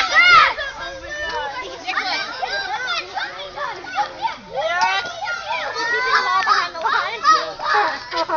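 Excited children shouting and chattering over one another, high voices overlapping throughout, with some adult talk mixed in.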